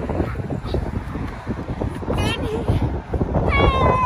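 Wind and handling rumble on the microphone, with a child's high-pitched drawn-out vocal sound: a short wavering cry about halfway through, then a longer held one near the end.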